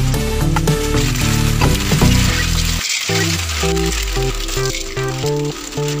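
Meat, cabbage and sauce sizzling in a cooking pan, under background music that drops out briefly about halfway through.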